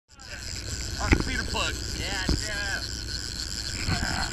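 Short shouted calls from people on a fishing boat deck over the steady low rumble of the boat's engine and wind noise, with a sharp thump about a second in.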